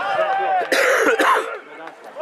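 Players and spectators calling out on a football pitch, with a loud, rough cough close to the microphone about a second in.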